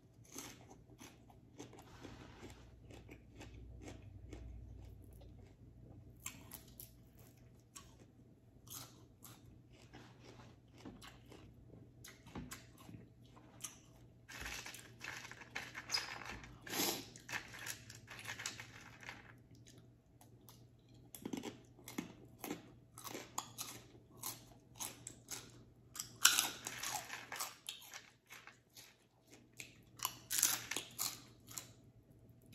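A person chewing and crunching green papaya salad with fresh greens and pork skin, in irregular bouts of crisp crunches with short pauses. The loudest crunching comes around the middle and again near the end.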